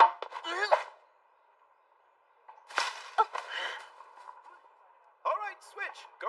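A tennis racket striking a ball with a sharp crack right at the start, then another sharp hit about three seconds in, with short voiced calls around them and a brief silence between.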